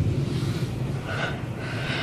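A person breathing out heavily right at the microphone, in a drawn-out, breathy gasp.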